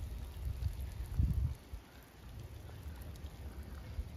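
Low rumbling noise on the recording microphone with a louder bump a little over a second in, typical of wind and handling while filming outdoors.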